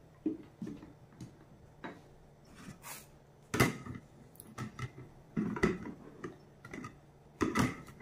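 Plastic mixer-grinder jar being handled and set onto its motor base: a string of irregular clicks and knocks, with the loudest knocks about a third, two thirds and nearly all the way through. The motor is not running.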